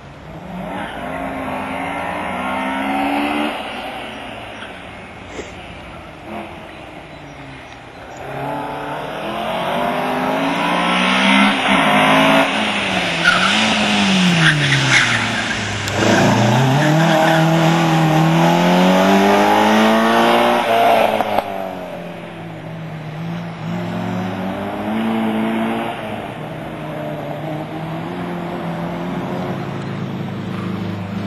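Modified Group H slalom car's engine revving hard and dropping again over and over as it is driven through the cone course, its revs rising and falling with each gear change and turn; it is loudest through the middle as it passes close, then fades. A brief tyre squeal comes about halfway through.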